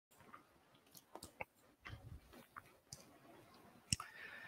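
Near silence: room tone with a few faint, scattered clicks, the loudest one just before the end.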